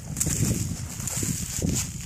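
Footsteps crunching through dry fallen leaves, with an irregular low rumble of wind buffeting the microphone.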